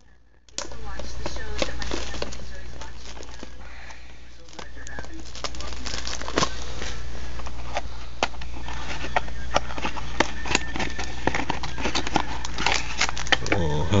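A small cardboard trading-card box being handled and opened, with the foil-wrapped pack inside crinkling: a dense run of irregular crackles, clicks and scrapes starting about half a second in, over a steady low hum.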